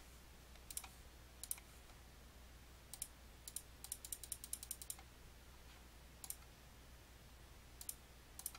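Faint computer mouse clicks pressing the keys of an on-screen TI-84 calculator emulator: a few single clicks, then a quick run of about ten in the middle, then a few more single clicks.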